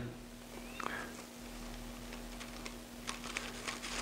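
Faint light ticks and rustles of thin silver leaf and its tissue backing paper being pressed and handled by fingers, over a steady low hum; the ticks come in a small cluster near the end.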